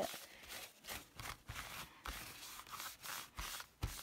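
A wipe rubbed over a large rubber stamp to clean off red distress ink, in a run of short, uneven scrubbing strokes, with a couple of light knocks near the end.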